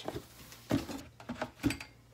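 A few light clicks and knocks from handling a plastic clamshell spinach container and setting a tomato half down on a wooden cutting board, over a soft rustle.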